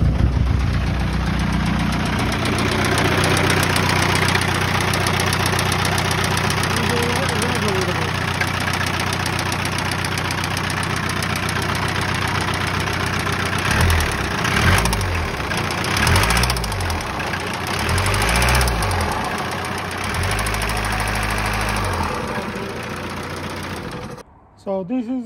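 VW PD150 1.9 TDI four-cylinder turbodiesel idling just after a start, then blipped several times from about halfway through and held up briefly near the end. The engine knocks when revved; its camshaft is badly worn.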